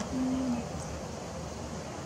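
A bird's low hooting call: one steady note about half a second long near the start, dipping slightly at its end, over a constant background hiss.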